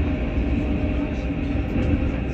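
Train running along the track, heard from inside the carriage: a steady low rumble.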